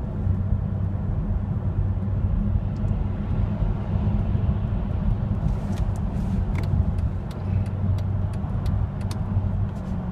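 Steady engine and road noise heard inside the cabin of a moving Mercedes-Benz SL, a low hum. Faint light clicks come and go in the second half.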